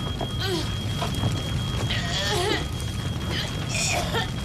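A burning flat with a low steady rumble and an unbroken high-pitched alarm tone, over which a woman trapped in the smoke gives short wavering, distressed cries and gasps; the longest comes about halfway through.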